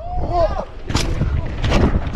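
A mountain-bike crash: a short cry from the rider as he goes over the bars, then a hard impact about a second in as he and the bike hit the dirt, followed by further knocks as he tumbles. Steady wind rumble on the helmet-mounted camera's microphone runs underneath.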